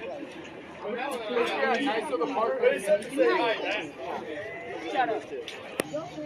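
Indistinct chatter of people talking, too unclear for words to be made out, with one sharp click near the end.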